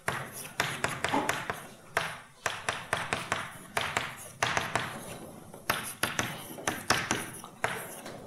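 Chalk writing on a blackboard: an irregular run of sharp taps, several a second, with short scratchy strokes between them as a formula is written out.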